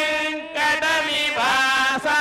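Male priests chanting Vedic mantras into microphones: long held syllables on a steady pitch, breaking briefly about half a second in and again near a second and a half.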